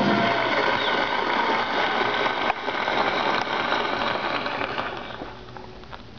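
A studio audience applauding at the end of a song, heard from a record played on a turntable. The clapping fades out about five seconds in, leaving faint record surface crackle and clicks.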